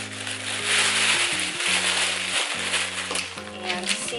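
Tissue paper rustling and crinkling as it is folded over the contents of a cardboard box, loudest in the first few seconds. Background music with held low notes plays underneath.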